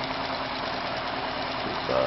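Homemade pulse-motor wheel spinning steadily at about 580 RPM, giving an even whir with a faint low hum.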